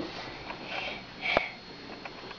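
A few short breathy sniffs, the loudest with a sharp click late on.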